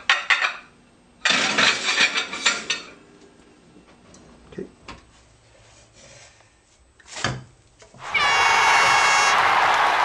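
Plates and the oven rack clattering for a couple of seconds as plates go into the oven to warm. About eight seconds in, a loud burst of crowd cheering and applause starts and keeps going, with a brief horn-like tone at its start.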